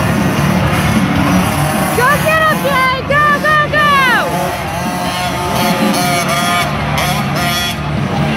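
Small youth 50cc dirt bike engines revving up and down in quick bursts, with a long falling rev about four seconds in, over a steady arena din of music and voices.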